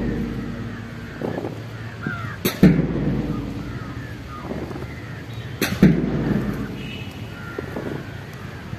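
A big parade drum struck twice, about three seconds apart, each beat ringing out low for a second or more; crows cawing faintly in between.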